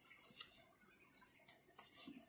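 Near silence, with a few faint clicks, the clearest one under half a second in.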